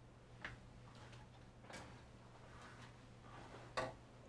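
Quiet room tone with a steady low hum and a few faint soft clicks and rustles from a cotton quilt being picked up and handled.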